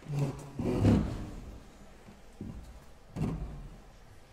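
Piano bench being adjusted and shifted on the stage: a few low thuds and creaks, the loudest about a second in and another near the end.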